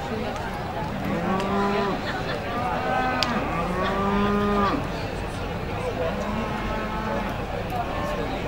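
Limousin cattle mooing: three long, steady calls in the first five seconds and a fainter one near the end.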